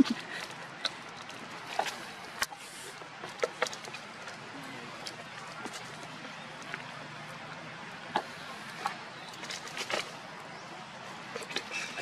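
Empty plastic water bottle crinkling as a young macaque handles and bites it: scattered sharp crackles and clicks over a steady outdoor hiss.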